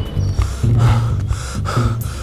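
A man gasping and breathing hard in short, sharp breaths, over low background music.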